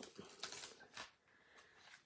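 Faint rustle and crackle of an adhesive sheet and cardstock being handled, with a few light ticks in the first second.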